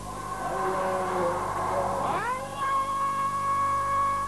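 A voice chanting. It wavers in pitch, then slides up about halfway through into a long, steady held note. A low, steady hum sits underneath.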